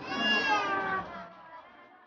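A person's high-pitched, drawn-out vocal cry lasting about a second, then fading into a faint background murmur.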